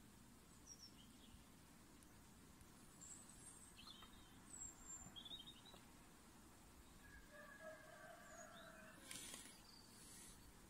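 Near silence: a faint background hiss with a few short, high chirps scattered through it, a held tone from about seven to nine seconds in, and a brief rush of noise just after.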